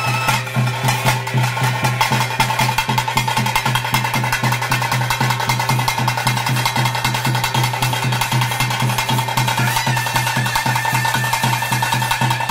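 Fast, even ritual drumming of a Tulu Nadu bhuta kola, struck with sticks at about five beats a second over a steady held drone. A higher held note comes in about ten seconds in.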